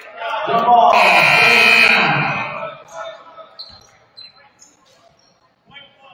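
A basketball scoreboard horn sounds for about a second, loud in the gym, over voices. After it, a basketball bounces a few times.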